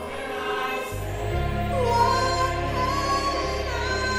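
A church choir singing a slow worship song over sustained instrumental backing, with a deep low note filling in about a second in.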